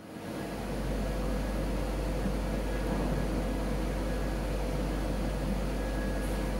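Steady mechanical hum and air hiss, like a darkroom's ventilation, with a deep low hum and a faint steady tone above it, fading in over the first second.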